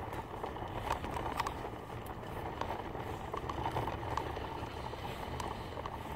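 Toy stroller wheels rolling over asphalt while walking: a steady low rumble with a few light clicks and taps.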